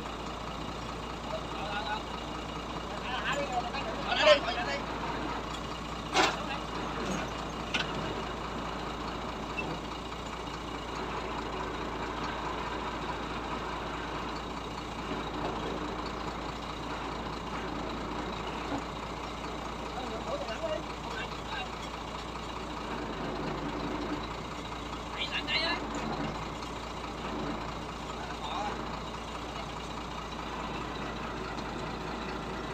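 Truck engine running steadily, driving a truck-mounted crane as it lowers a boat hull onto the truck bed. A few sharp knocks stand out in the first eight seconds or so.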